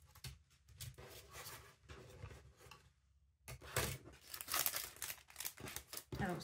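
Crinkling and tearing as an old craft-supply pack is opened by hand, its dried tape and rubber bands pulled off. The rustling is quiet at first, stops briefly about halfway, then comes back louder and denser.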